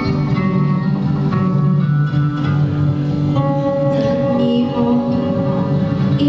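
Live electronic music: layered held tones that shift pitch every second or so over a dense low drone.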